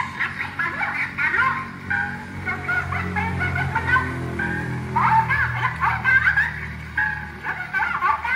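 Wind-up Victor horn gramophone playing a record: music with a voice, its sound packed into the middle range as from an acoustic horn, running on without a break.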